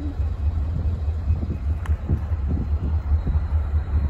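A low, steady rumble, mostly wind buffeting the microphone, over the faint sound of an MBTA commuter train approaching in the distance.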